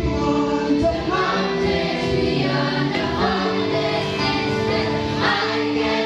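Congregation singing a gospel worship song together with instrumental accompaniment, amplified through a PA. The sustained sung notes move from pitch to pitch throughout.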